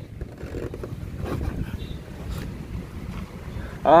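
Wind rumbling on the microphone, with faint handling knocks as the camera is moved.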